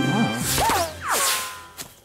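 Cartoon sound effects over background music: about half a second in, two quick whooshes with falling whistle-like glides. The sound then fades down, with a short sharp click near the end.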